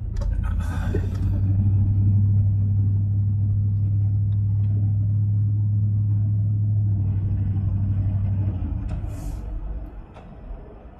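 Car driving on, heard from inside the cabin: a loud, steady low rumble that builds about half a second in, holds, and fades about a second before the end, with a brief hiss near the start and another near the end.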